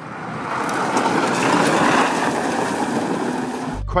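Chrysler PT Cruiser driven hard on dirt: engine running and tyres churning loose dirt, a rough noisy rush picked up by a phone's microphone. It grows louder over the first second or so, then cuts off abruptly near the end.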